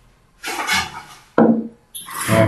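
A man's voice between phrases: an audible breath, then a brief wordless vocal sound.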